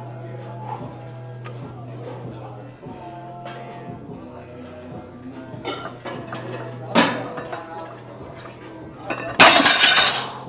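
A loaded barbell is deadlifted and put back down: a sharp metallic clank about seven seconds in, then a loud crash and rattle of plates as the bar hits the floor near the end. Background gym music plays throughout.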